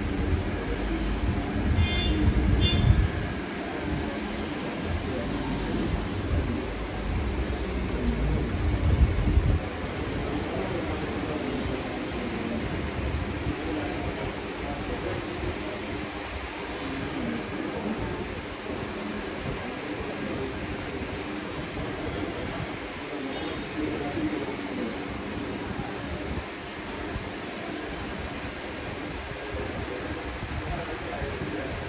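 Electric shaver buzzing steadily as it is worked over the back of the neck during a haircut cleanup, over a constant shop hum. A heavier low rumble runs through the first ten seconds or so, then eases off.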